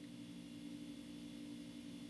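Quiet room tone in a pause between speech: a faint steady low hum with light hiss.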